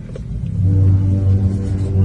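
A 2015 Jeep Wrangler JK's 3.6-litre Pentastar V6 pulls steadily at low revs while crawling a rocky trail, heard from inside the cab. It grows louder about half a second in, then holds an even hum.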